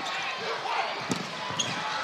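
Volleyball struck during a rally: a few sharp hits of the ball, over steady arena crowd noise.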